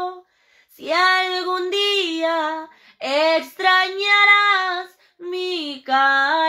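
A woman singing unaccompanied: three held, sliding phrases, with short breaths between them.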